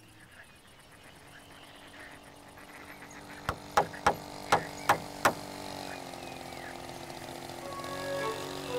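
Six quick hammer blows on a wooden sign board, about three a second, beginning about halfway through, over soft background music.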